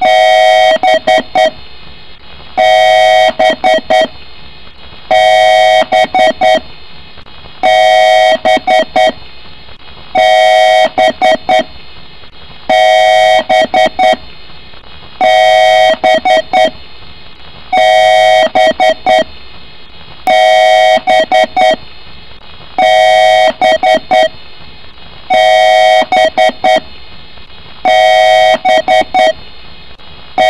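Computer power-on self-test beeps: one long beep followed by about four quick short beeps, the pattern repeating loudly about every two and a half seconds.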